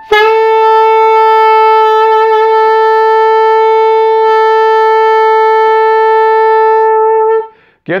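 Tenor saxophone holding one long, steady tuning note, concert A, for about seven seconds, then stopping cleanly.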